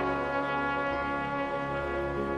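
Trumpet playing a slow, held melodic passage that gradually grows quieter.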